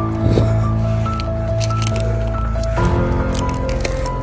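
Background music with long held notes that shift in pitch every second or so over a steady heavy bass, with scattered short clicks on top.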